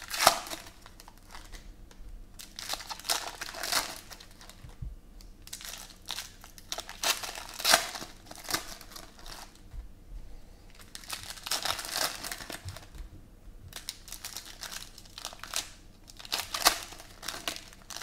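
Foil Panini Prizm Football card packs being handled and torn open by hand, the foil wrappers crinkling and ripping in irregular bursts.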